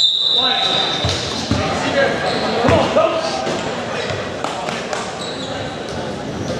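Basketball game in a large, echoing gym: a steady high-pitched squeal lasting about a second at the start, then the ball's repeated bounces on the hardwood floor over the voices and shouts of players and spectators.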